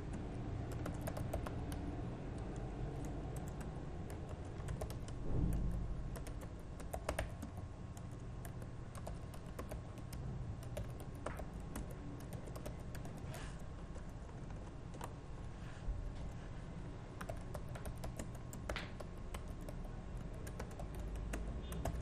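Computer keyboard typing: irregular runs of keystrokes as words are entered into a spreadsheet, over a low steady background rumble. A dull low thump stands out about five and a half seconds in.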